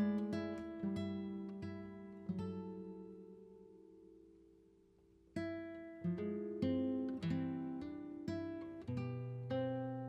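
Background music on acoustic guitar: single plucked notes that ring and fade, dying almost away about five seconds in before a new run of notes picks up.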